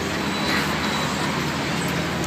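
Steady road traffic noise.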